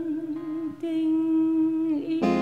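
A woman's voice holding two long wordless notes with vibrato, breaking briefly a little under a second in, over a softly played acoustic guitar.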